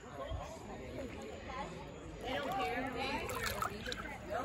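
Voices of people talking and calling out across the water, with no clear words, louder in the second half.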